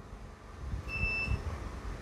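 A single short electronic beep, one steady high tone lasting about half a second, about a second in, over a low background rumble.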